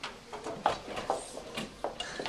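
A scattering of short clicks and knocks, about seven in two seconds, from salon tools being handled and rummaged through while someone looks for a round brush.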